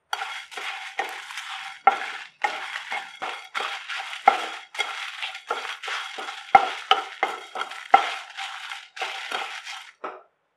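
Wooden spatula stirring whole spices as they dry-roast in a nonstick pan: dried red chillies, coriander seeds, cumin, fennel and black peppercorns. A dry rattle and scrape about two strokes a second, with a few sharper knocks of the spatula against the pan.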